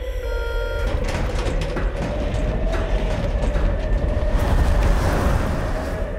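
Steady low rumble of a military jet transport aircraft in flight, as heard from its hold. A few short electronic beeps sound in the first second, and a rushing noise builds up toward the end.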